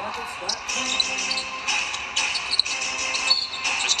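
Televised basketball game sound heard off a TV's speaker: sneakers squeaking and the ball bouncing on the hardwood court over a bed of arena noise, with a short high referee's whistle near the end for a foul.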